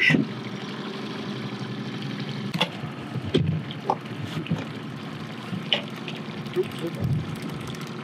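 Small outboard motor running steadily at trolling speed, with water sloshing against the boat's hull. A few light knocks come in the middle.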